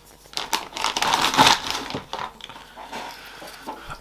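Plastic packaging crinkling and rustling as an antenna loading coil is unwrapped by hand. Loudest in the first two seconds, then a few fainter handling clicks.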